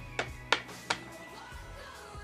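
Background music with three sharp taps about a third of a second apart in the first second, from a small plastic Littlest Pet Shop toy figure being hopped along a surface by hand.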